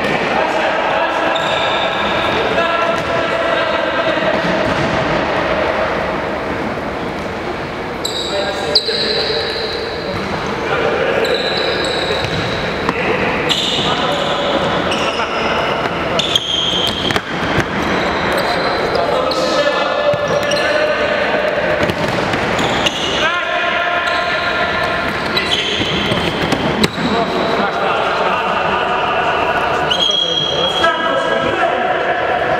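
A futsal ball being kicked and bouncing on a wooden gym floor, sharp knocks scattered through, with players shouting to each other in a large hall.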